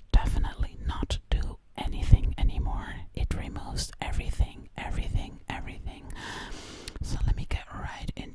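Very close, unintelligible whispering in short breathy phrases with frequent brief pauses, along with soft low thuds.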